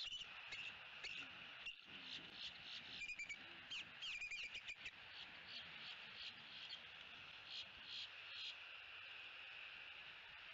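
Faint outdoor ambience at a pine-tree nest: a steady high-pitched background chorus, with a run of short bird chirps in the first half and a few more near the end.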